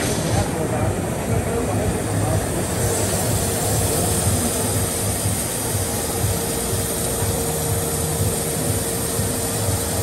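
Flow Mach 200 waterjet cutting head running: a steady hiss and rush of the high-pressure water jet cutting a metal plate over the water tank. A steady hum joins about three seconds in.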